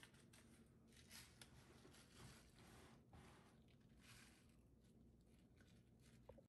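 Near silence, with faint rustling and scratching from a seasoning sachet being torn open and shaken over raw pork.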